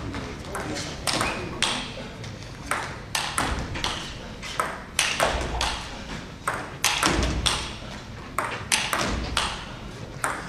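Table tennis ball struck by rackets and bouncing on the table in a rally: a run of sharp, irregular clicks that ring in a large sports hall.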